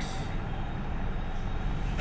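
Steady background noise, a low rumble with a hiss over it, with no distinct events.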